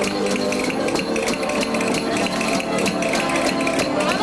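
Traditional Valencian rondalla of guitars and bandurrias playing a jota, with steady strummed chords and plucked melody.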